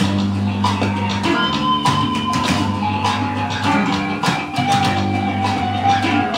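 Electric bass guitar playing a rock bass line over drums, with a long held higher guitar note that slides in pitch.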